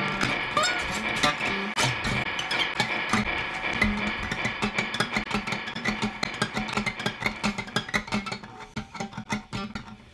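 Two guitars in free improvisation, playing a dense run of quick plucked notes and clicks. The playing thins out and gets quieter near the end.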